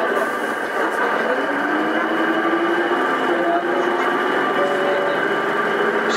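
Karosa B931E city bus's diesel engine and drivetrain running under way, with its pitch rising in the middle as the bus gathers speed.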